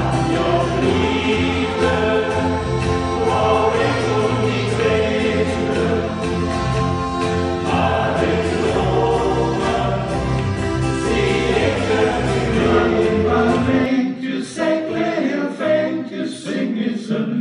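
Male choir singing in harmony to button accordion and a plucked string instrument, with a steady bass line under the voices. About two seconds before the end the accompaniment and bass stop abruptly and the men's voices continue unaccompanied.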